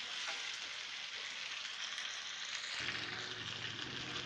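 Potato and minced-beef hash sizzling steadily as it fries in a metal pan, stirred now and then with a wooden spatula. A low hum comes in about three seconds in.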